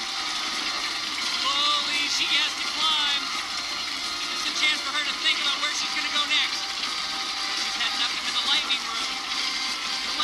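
Excited, high-pitched voices shouting and yelling in short bursts throughout, over a steady background noise.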